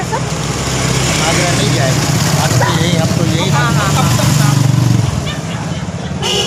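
A motor vehicle's engine running close by, a low steady hum that grows louder and then drops away about five seconds in, with people's voices talking faintly underneath.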